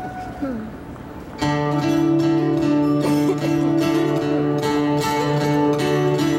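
A live band's instrumental song intro begins about a second and a half in, after a short quieter lull: plucked guitar notes over steady held chords.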